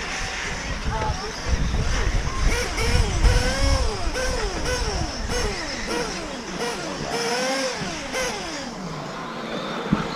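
Several electric RC racing buggies running on a dirt track, their brushless motors whining in repeated rising and falling pitches as they accelerate, brake and pass. Wind rumbles on the microphone in the first half.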